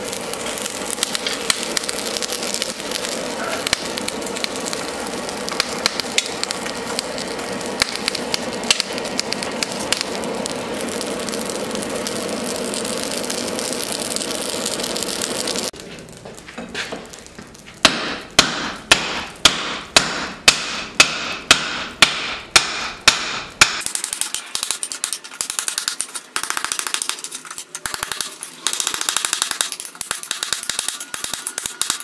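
A solid-fuel forge fire burning with a steady rush and crackling as it throws sparks. Then about a dozen hammer blows ring on a steel anvil, about two a second, followed by quieter irregular tapping.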